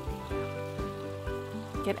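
Fish head frying in hot oil in a pan, a steady sizzle, under background music with sustained chords and a soft low beat about twice a second.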